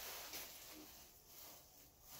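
Near silence: room tone with a couple of faint, soft rustles as the jacket's hood and drawcords are handled.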